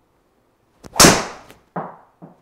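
A driver striking a golf ball once, about a second in: a single loud, sharp crack that dies away over about half a second. A shorter, weaker sound follows near the end.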